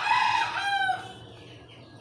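A bird call, high and held for about a second, falling in pitch at the end.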